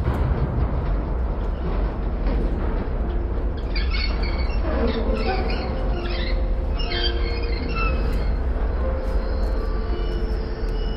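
Large sliding hangar door rumbling along its track as it is pushed open by hand, with its rollers squeaking and squealing through the middle of the push.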